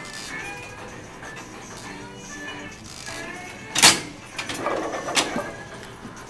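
Background music playing under gym ambience, then a sharp, loud clank about four seconds in and further rattling clanks over the next second or so, as the heavily loaded leg press sled is racked and its weight plates shift.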